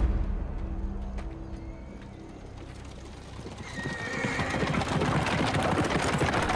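A team of horses pulling a carriage at speed: fast hoofbeats grow in from about halfway and get louder, and a horse whinnies as they start. Low music plays under the first half.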